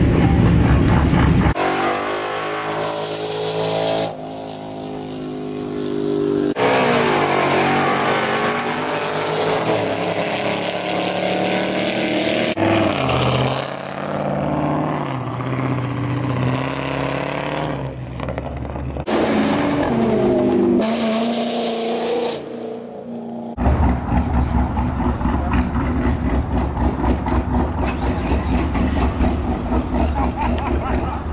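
Several car engines revving and accelerating, heard as a string of short clips with abrupt cuts, the engine pitch rising and falling in each. Near the end comes a deep, pulsing engine rumble.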